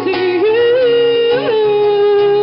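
A woman singing live through a PA, holding long notes: one held note that swoops up and breaks down to a lower held note about one and a half seconds in, with acoustic guitar accompaniment underneath.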